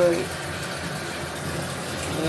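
A pause in a woman's speech, filled by a steady low hum and hiss of background noise.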